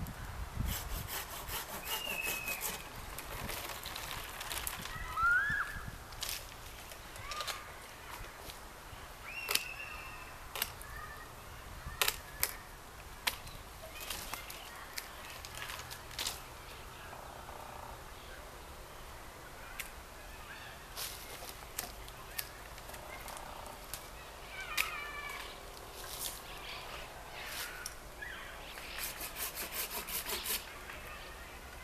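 Hand pruning shears snipping branches of an apricot tree: sharp clicks scattered through, some in quick clusters. Birds call briefly now and then in the background.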